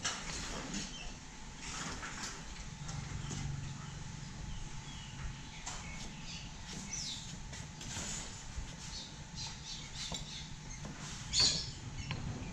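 Knife chopping wet spirogyra algae on a wooden chopping block: irregular chops, with one louder stroke near the end.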